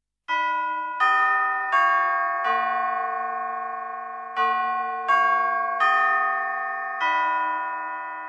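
Bell-like chime tones playing a slow eight-note phrase: two groups of four strikes, each note ringing on and fading as the next is struck. The chimes begin about a third of a second in.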